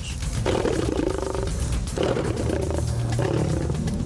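Lion growling in three rough growls of about a second each, over a low rumble.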